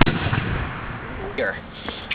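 A sharp knock right at the start, then a steady rustling noise of the camera being handled and moved outdoors, with faint voices near the end.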